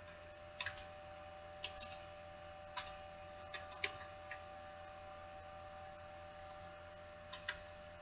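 Faint, scattered clicks of a computer keyboard and mouse as text is deleted and retyped in a code editor, including a quick run of three near two seconds in, over a steady electrical hum.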